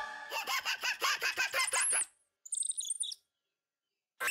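Bird-like cartoon chirping: a quick run of pulsed twitters, about seven a second, ending in high whistling tweets about two seconds in. After a short pause comes a brief high warble.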